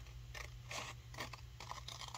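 Scissors cutting through a paper tag, a few faint snips as the blades work up the sheet.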